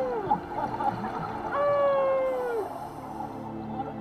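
Humpback whale song heard underwater: the falling tail of one call right at the start, then about a second and a half in a single long call that holds its pitch for about a second before sliding down and fading.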